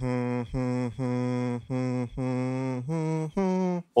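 A man humming a tune into a microphone: about seven held low notes, each roughly half a second with short breaks, the first five on one pitch and the last two stepping higher.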